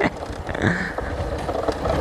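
Motorcycle engine running steadily at low speed as the bike rides along a rough, rutted dirt track.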